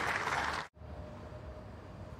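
Crowd applause after a point ends, cut off abruptly a little over half a second in. Quieter open-air court ambience with a faint steady hum follows.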